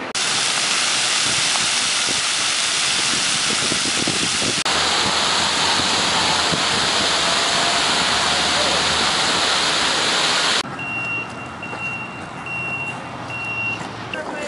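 Close fountain jets spraying water, a loud steady rush of spray that cuts off abruptly after about ten seconds. A quieter outdoor background follows, in which an electronic beeper sounds about five times in a row.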